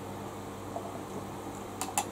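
Steady low hum of room noise, like a fan, with a few small clicks near the end.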